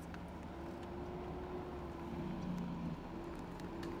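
A vehicle engine idling: a steady low hum with a held tone, and a lower tone that fades in and out. A few faint clicks sit on top of it.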